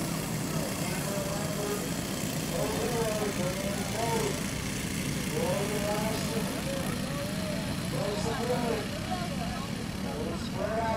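A pack of dirt-track racing go-karts with small single-cylinder engines, running together under a steady hum. Their pitches rise and fall in clusters as the karts throttle through the turns and pass by.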